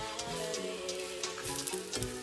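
Eggs and leftover vegetables sizzling in a frying pan, with a spatula stirring and scraping them, under background music with steady sustained notes.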